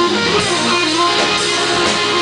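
Sunburst Stratocaster-style electric guitar playing blues live through an amplifier, loud and continuous with sustained notes.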